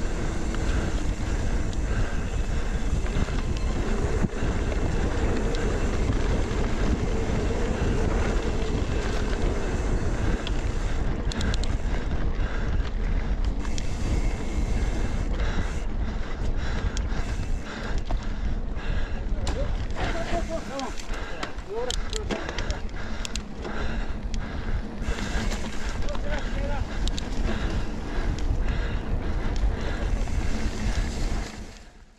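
Wind on the microphone and mountain bike tyres rumbling over a dirt forest singletrack, with the bike rattling. From about eleven seconds in come many sharp clicks and knocks as it goes over rougher ground.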